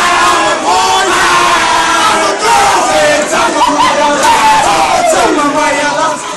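A crowd shouting and cheering, many voices yelling at once, with one long falling yell about five seconds in.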